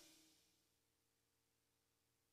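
Near silence at the end of the recording.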